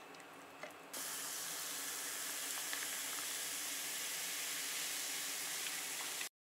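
Faint liquor pouring over ice cubes in a metal tumbler with small ice ticks, then, about a second in, an abrupt change to a steady fizzing hiss of carbonated soda over ice for a highball.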